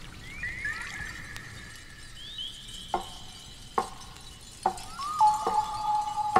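Ambient electronic synthesizer music: tones that slide downward into long held notes, with short struck notes about a second apart in the second half. Near the end a new tone swoops down and holds at a lower pitch.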